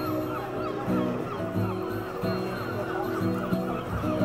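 Acoustic guitar playing held chords, with a rapid run of honking bird calls over it, several calls a second throughout.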